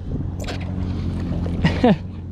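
Jet ski engine idling with a steady low hum. Near the end a short falling vocal exclamation cuts in.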